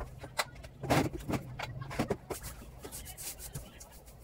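A long pole tapping and scraping against the ceiling corner: scattered light knocks and rubs, the sharpest about a second in and again just past two seconds.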